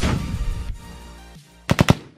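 Edited logo-sting music and sound effects: a loud whoosh fades out, then a rapid burst of four or five sharp, gunshot-like hits comes near the end.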